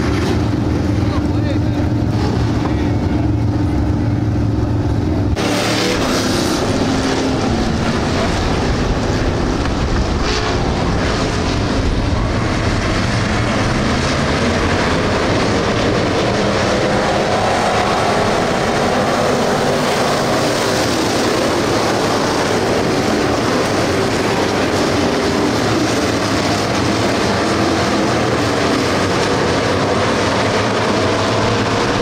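Dirt-track stock cars: first a steady low engine drone from cars rolling slowly, then an abrupt change about five seconds in to the loud, dense sound of the whole field racing at speed around the dirt oval.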